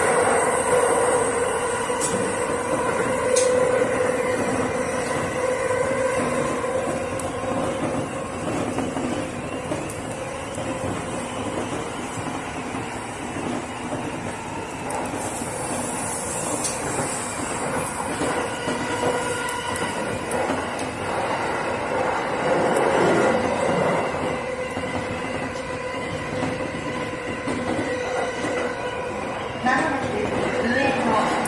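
E231-series electric commuter train running, heard from the driver's cab: steady rail running noise with a sustained whine throughout. The audio carries an added echo effect.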